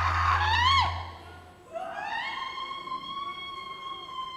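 A woman's high-pitched wailing screams: a few cries rising and falling in pitch, then after a short break one long wail that climbs and is held steady for over two seconds.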